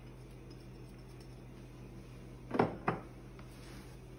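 Two quick clinks against the rim of a cooking stockpot while spices are being added, the first louder, over a low steady hum.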